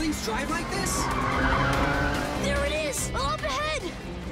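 Cartoon car-chase sound effects: a car engine racing and tyres squealing, over background music.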